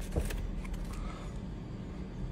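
A few soft clicks and rustles in the first second as a paper warranty card and a phone are handled, over a steady low hum.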